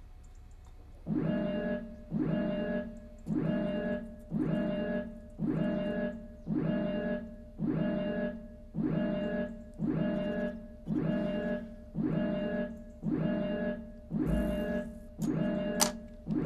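Background music: a single distorted electric-guitar chord struck over and over in a steady pulse, about three strokes every two seconds, each fading before the next, starting about a second in. Near the end a short hiss and then a brief high squeal cut in.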